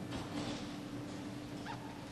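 Room sound of a large council chamber during a quorum count: a faint steady low hum begins just after the start, with scattered soft rustles and shuffling noises and a faint short squeak near the end.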